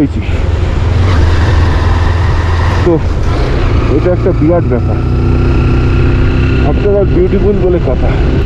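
Motorcycle running on the road, recorded on the rider's helmet camera, with heavy wind rumble on the microphone. A faint engine whine climbs a little through the middle.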